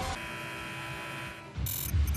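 Electronic TV-broadcast transition effect: a steady buzzing tone held for about a second and a half cuts out, then a short bright, crackly burst leads into a deep low hit at the very end.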